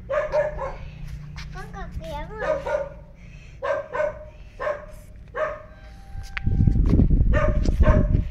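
A dog giving short, repeated yips and barks, about eight in all, with a wavering whine-like call around two seconds in. Near the end a loud low rumble covers them on the microphone.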